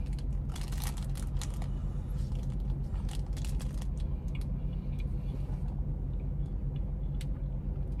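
Steady low rumble of a car idling, heard from inside the cabin. In the first two seconds there are soft crinkles and clicks from a plastic snack wrapper and chewing, with a few more later.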